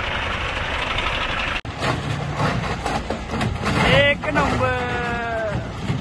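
Forklift engine running steadily, cut off abruptly about one and a half seconds in and followed by the lower, uneven running of another heavy vehicle's engine. Near the end a voice calls out twice, the second call long and drawn out.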